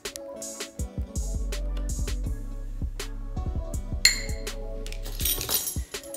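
Background music with scattered light glass clinks, from a measuring cup knocking the food processor bowl while oil is poured in, and a brief scrape about four seconds in.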